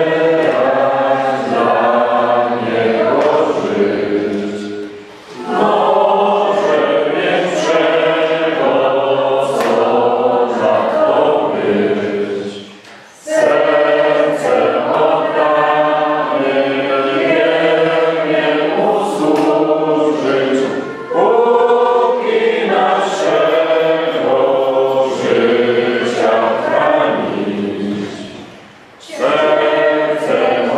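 A choir singing in several voices, in long held phrases with short breaks about 5, 13, 21 and 29 seconds in.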